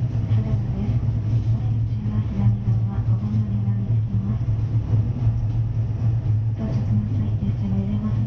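Electric multiple-unit train running along the line at speed: a steady low hum from the motors and wheels, heard from inside the train behind the cab.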